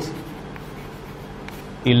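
Chalk writing on a chalkboard: faint scratching strokes of the chalk as a short word is written.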